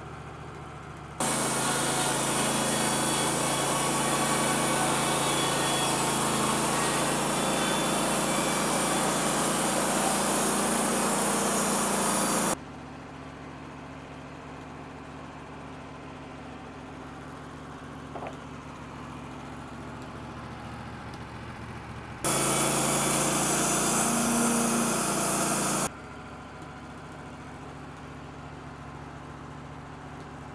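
Wood-Mizer LT15 WIDE band sawmill cutting through a red cedar log: a loud, steady saw cut lasting about eleven seconds, then a second cut of about three and a half seconds late on. In between and after the cuts the mill keeps running with a quieter steady hum.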